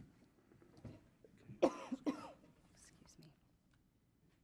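A person's voice in a meeting room: two quick, close vocal bursts about halfway through, among faint scattered room sounds.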